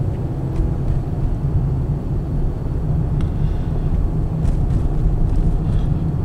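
Steady low rumble of a car's engine and tyres heard inside the moving car's cabin, with a few faint ticks.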